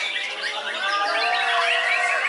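White-rumped shamas (murai batu) singing together in a dense, unbroken chorus of overlapping whistled phrases, glides and chirps.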